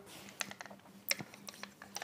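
A run of about seven light, irregular clicks and taps from small hard objects being handled, over a faint steady hum.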